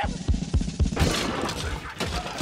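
Music with a steady low beat, and about a second in a loud crash of shattering glass cuts in over it.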